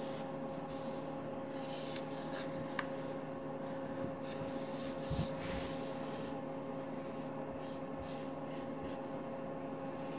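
A marking tool scratching softly on fabric in short strokes as it traces around a quilting template, over a steady electrical hum.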